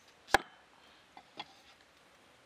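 Steel cleaver chopping through ripe papaya into a round wooden chopping block: one sharp chop, then two light knocks about a second later.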